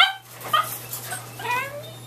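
A dog whining: short high-pitched cries, the last one longer and falling in pitch.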